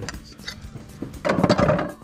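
Plastic window-cleaning T-bar handles clattering against each other in a cardboard bin as one is pulled out, loudest for about half a second near the end.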